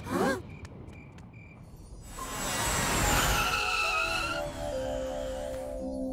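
Cartoon rocket-flight sound effects over music: a short swoop at the start, a few faint twinkling chimes, then a swelling whoosh with whistling tones from about two seconds in. Held music notes come in about halfway through.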